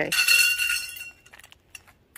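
Metal awning pole sections clink against each other once, with a high ringing that fades over about a second, followed by a few light clicks.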